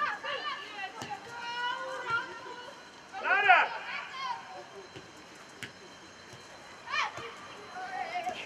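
Several shouted calls from players and coaches across a football pitch, one held call early on, the loudest shout about three seconds in and another near the end, over a low steady outdoor background.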